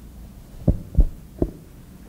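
Three dull, low thumps within about a second, over a faint steady low hum.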